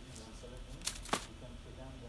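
Sheets of paper being handled and shuffled, with two quick sharp rustles a little after the first second.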